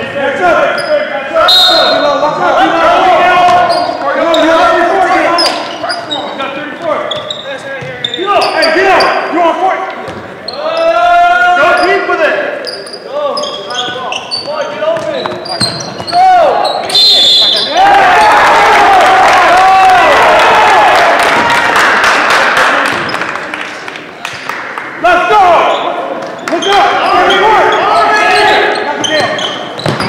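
Basketball game in an echoing gym: players and spectators shouting while a ball dribbles on the hardwood floor. Past the middle, the crowd noise swells loud for several seconds.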